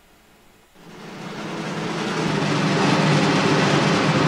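A rumbling noise with a low steady drone under it swells in from about a second in and keeps growing loud: an edited intro sound effect.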